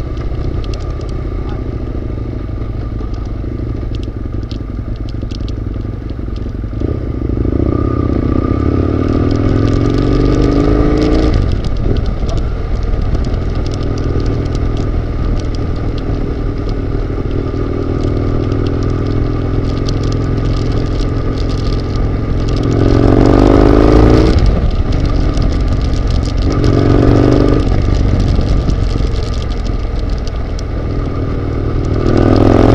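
Husqvarna Nuda 900R's parallel-twin engine, heard from on board, running at low road speed and rising in pitch as the bike accelerates: about seven seconds in, loudest around twenty-three seconds, and once more briefly around twenty-seven seconds.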